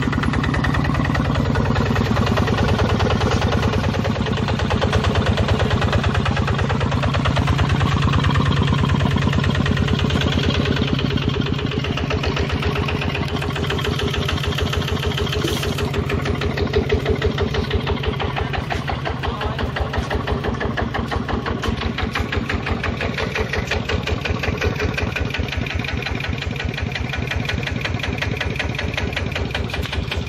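Kubota RT125 single-cylinder horizontal diesel engine running steadily, with a fast, even chugging of firing pulses. It settles slightly quieter partway through.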